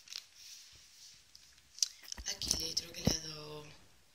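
Card and paper pages of a handmade scrapbook album being handled and turned, with soft rustles and light taps. A short held vocal sound comes about halfway through.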